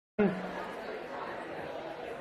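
Many indistinct voices chattering in a lecture hall. The sound cuts in abruptly just after the start.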